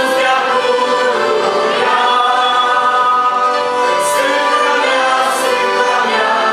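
Several voices singing a Christian song together, accompanied by accordions, in a continuous steady passage.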